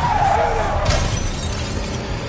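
Action-film sound effects: a squeal that falls in pitch for most of a second, then a sharp crash about a second in, over a steady low rumble, as a man tumbles from a moving pickup truck onto the road.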